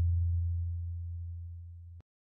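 A low ringing tone from a sound effect laid under the title card, fading steadily and cutting off suddenly at the end.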